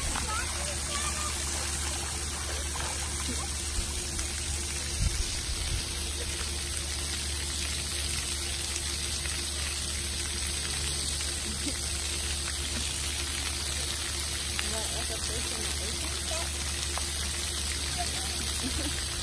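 Steady spray and splashing of splash-pad water jets and fountains, with faint voices far off and a couple of soft thumps about four and five seconds in.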